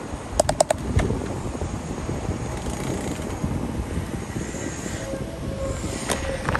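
Bicycle rolling across a steel bridge deck: a steady low noise of tyres and wind, with a quick run of four or five clicks about half a second in and a single knock about a second in.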